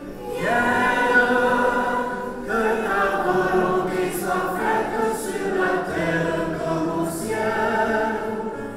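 A congregation singing a worship song together, in phrases of held notes with short breaks between them.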